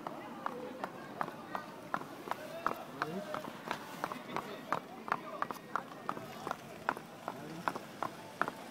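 A horse's hooves clopping on an asphalt road at a walk, a sharp knock about two or three times a second, with faint voices in the background.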